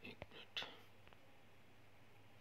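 Near silence with a few faint, brief whisper-like breath and mouth sounds from a man, all in the first second.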